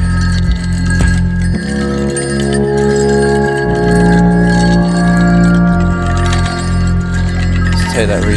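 Live electronic music jam: keyboard synth played through a Chase Bliss MOOD granular micro-looper pedal, sustained chords over a steady bass, changing about one and a half seconds in and again near four seconds.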